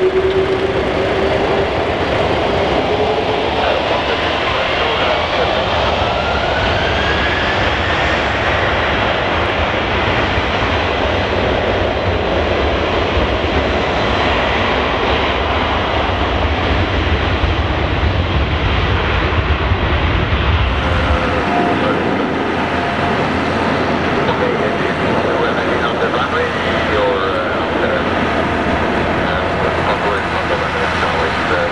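Airliner jet engines at high thrust on the runway, a loud steady rush with a whine that rises in pitch over the first several seconds. About twenty seconds in, the deep rumble drops away abruptly and a different jet's engine noise takes over.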